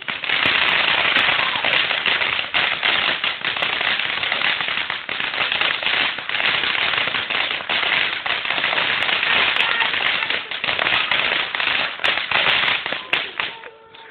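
Ground firework fountain spraying sparks: a loud, dense crackling hiss that starts suddenly and dies away near the end as it burns out.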